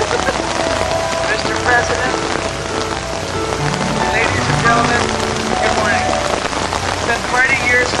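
Steady rain falling, a dense hiss that runs throughout, with a faint voice now and then.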